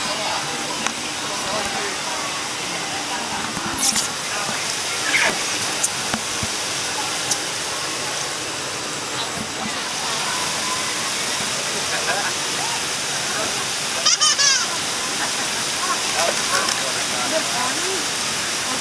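Steady rush of churning water along a river-rapids raft ride, with voices scattered through it and a brief high-pitched squeal about fourteen seconds in.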